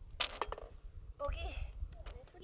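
Golf ball dropping into the hole's cup after a short putt: a sharp clink and a brief rattle against the cup as it falls in.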